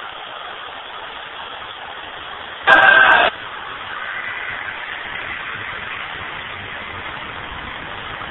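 Steady hiss of ghost box radio static, with a car passing on the nearby road. About three seconds in comes a short, loud blast of steady tone lasting about half a second.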